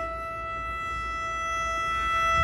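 A newly built cello holding one long, high bowed note, soft and steady, swelling slightly toward the end.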